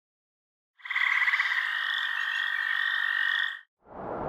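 A frog trilling for about three seconds, a fast pulsing at first that settles into a steady high trill, then cutting off; a rushing noise like flowing water rises right at the end.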